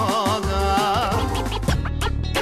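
Albanian folk song performed live: a male voice with wide vibrato over violin, accordion and plucked long-necked lutes. Near the end it is broken off by a record-scratch transition effect.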